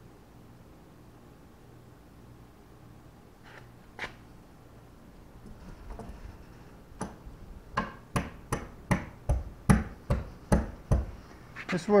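Palm of a hand striking a stainless steel bow eye to drive its studs through the holes in a boat's bow: a run of about a dozen sharp knocks, roughly three a second, starting about seven seconds in.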